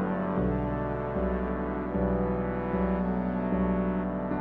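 Background music with low held notes that change about every three-quarters of a second.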